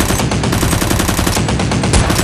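Automatic gunfire sound effect: one rapid, unbroken burst of machine-gun shots.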